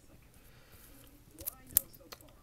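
Low room tone, then a few sharp clicks of hard plastic trading-card holders being handled, the loudest about three-quarters of the way through.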